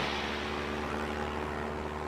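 Steady drone of an aircraft engine heard from inside the cabin: an even, unchanging low hum.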